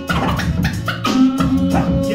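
Hip-hop DJ set played from vinyl records on turntables, with record scratching over the beat.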